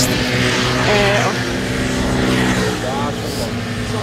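A steady engine drone holding one pitch, with a brief voice heard twice over it.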